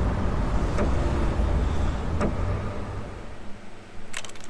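A low rumbling drone from the music video's closing sound design, with a few sharp clicks; it fades out near the end.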